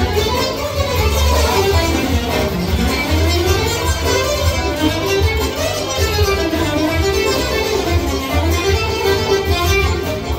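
Godin ACS Slim nylon-string electro-acoustic guitar played in an improvisation in 9/8, plucked melodic playing. A smoothly gliding melody line and a steady low bass sound along with it.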